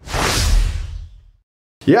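Whoosh transition sound effect with a deep low boom under it, starting sharply and fading out over about a second and a half, then dead silence.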